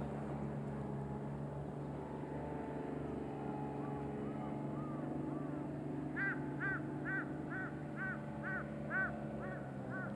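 A steady low hum with a bird calling. From about six seconds in, the bird gives a quick run of short, repeated high notes, about two and a half a second.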